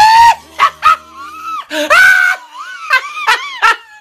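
A man's high-pitched shrieking laughter: a run of squeals that slide in pitch, loudest at the start and in a long squeal about two seconds in, with shorter shrieks near the end.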